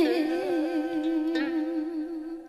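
A female xẩm singer holds a long drawn-out vowel at the end of a phrase, the melismatic 'i hi hi', on one sustained note with a wide, even vibrato.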